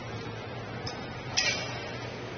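A single sharp click with a brief ringing tail about a second and a half in, after a faint tick just before it, over a steady background hiss.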